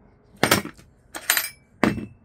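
Three sharp metal clinks as the steel hooks and fittings of a ratchet strap knock against a steel E-track rail.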